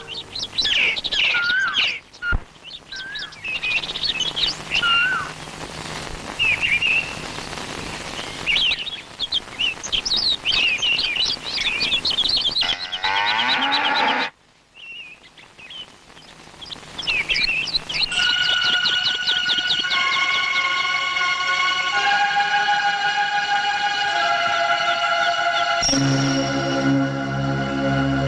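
Birds chirping, many short calls overlapping over a soft hiss of ambience. The calls stop abruptly a little past the middle, return briefly, and then give way to sustained music notes in the last third.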